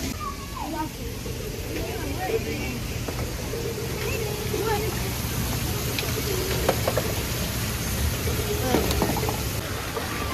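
Water running and splashing from the pipes and spouts of a children's water play area, a steady rush, with children's voices faint in the background.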